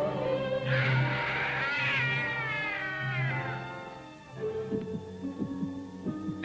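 A cat's long, screeching yowl that slides down in pitch, over dramatic orchestral music. The music fades after about four seconds, and new held notes come in near the end.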